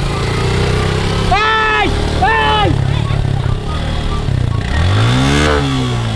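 Motorcycle engine running at low revs as a learner rider moves off slowly, with two short high-pitched cries from a rider about a second and a half in. Near the end the engine note rises and falls once, a brief rev.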